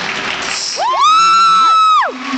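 A high-pitched whoop from a spectator close by, over the crowd and the show's music. It sweeps up about a second in, is held at one pitch for about a second, then drops away.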